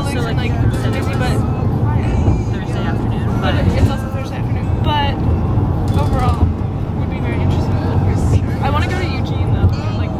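Steady low rumble of road and engine noise inside a moving passenger van, with people's voices chatting over it.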